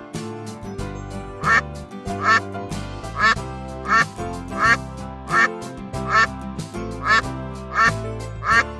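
A duck quacking over and over at an even pace, about nine quacks starting about a second and a half in, over steady background music.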